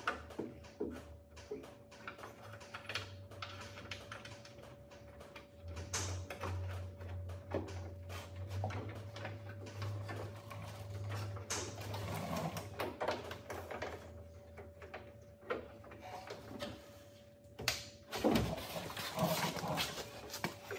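Hand work inside a steel ute tailgate: scattered small metallic clicks and knocks of tools and parts as the latch brackets are worked on, over a steady faint hum.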